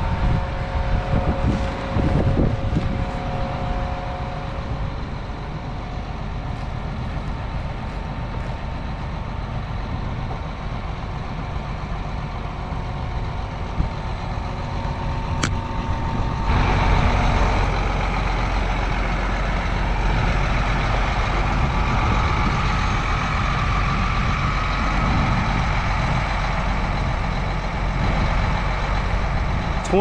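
John Deere tractor's diesel engine running steadily, with a few thin steady tones over it in the first seconds. About halfway through the sound changes abruptly to a louder, fuller engine note.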